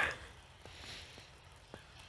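Faint footsteps in fresh snow, a few soft steps over a low background hiss.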